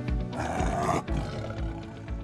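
A short big-cat roar shortly after the start, laid over music with a steady beat.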